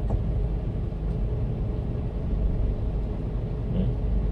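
Steady low engine rumble of a 1-ton truck idling while stopped at a red light, heard from inside the cab, with a faint steady hum above it.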